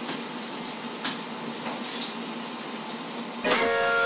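A few light clicks from a desk phone's buttons, then about three and a half seconds in a held musical chord starts and rings on steadily as music comes in.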